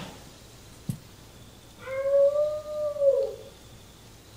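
One long wolf-like howl from the animated character, starting about two seconds in, rising slightly, holding, then falling away. A brief click comes just before one second in.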